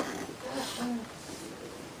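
Faint, short voice sounds about half a second to a second in, much quieter than the sermon on either side, over low room noise.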